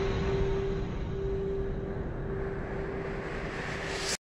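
A steady, noisy rumble with a hum through it that breaks off and comes back a few times: a sound-design effect under a film's opening logo animation. It cuts off abruptly at the end.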